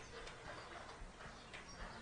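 Near silence: faint room tone with a few soft ticks in a pause between speech.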